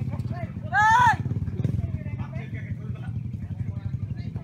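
A small trail motorcycle engine idling steadily, with a loud shout about a second in.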